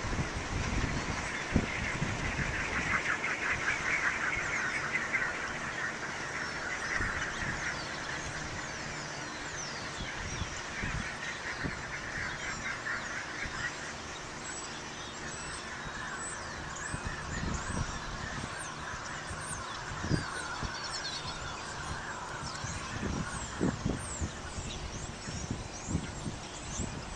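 Gusty wind buffeting the microphone near a small wind turbine spinning, with a steady whirring noise that is strongest in the first several seconds. Small birds chirp higher up from about halfway through.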